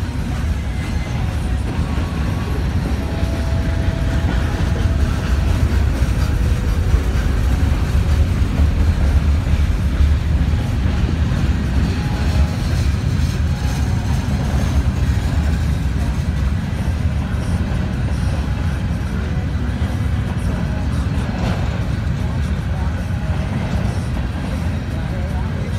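Freight cars of a CN freight train rolling past at a grade crossing: a steady, loud, low rumble of steel wheels on rail that carries on without a break as boxcars, hoppers, flatcars and autoracks go by.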